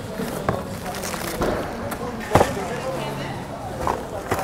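Goods being rummaged in a bin of secondhand household items: a few sharp knocks and clatters of ceramic and plastic wares, the loudest about two and a half seconds in, with people talking in the background.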